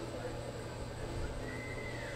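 A horse neighing: one high call held for about half a second near the end, then falling away, over a steady low hum in the arena.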